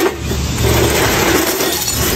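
Stamped steel rotor laminations clinking and scraping against each other and on a steel platform scale as they are lifted off and dropped on the ground, with a sharp clank at the start, over a steady low rumble.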